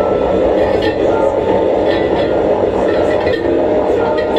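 Live experimental electronic noise music: a dense, steady drone with a few held humming tones and faint scattered crackles.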